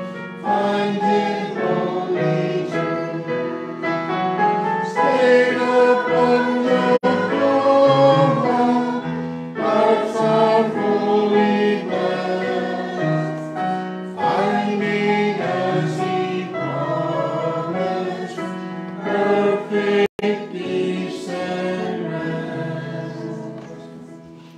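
A small congregation singing a hymn together, voices moving from one held note to the next; the singing dies away near the end.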